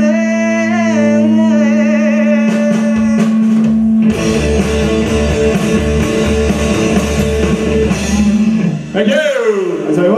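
Live rock band playing the close of a song: a sung note held over a sustained electric guitar chord, then the drums come in about three seconds in and the full band plays on. Near the end the sound slides down in pitch.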